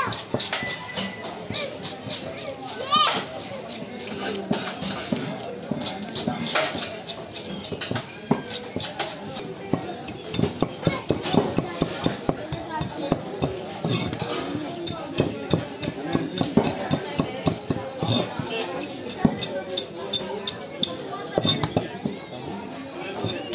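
Knife scraping scales off a flathead fish and cutting it on a wooden chopping block: a dense run of short scrapes and knocks, thickest in the second half. Voices of people and children are in the background.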